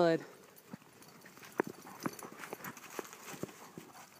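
Footsteps squelching through wet mud and leaf litter: irregular short slaps and clicks, a few a second.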